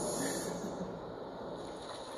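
Recorded ocean waves, a steady wash of surf, played back over a speaker.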